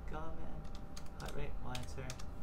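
Computer keyboard being typed on: several separate keystrokes, irregularly spaced.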